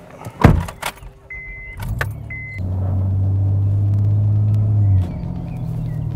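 Car door slamming shut about half a second in, followed by two short electronic beeps from the car's chime. The engine then starts at about two seconds and runs steadily, dropping in level and shifting pitch at about five seconds.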